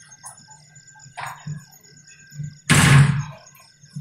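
A wooden door shut hard about three seconds in, a single loud bang with a deep thud that dies away quickly. Soft background music and faint steady high tones run underneath.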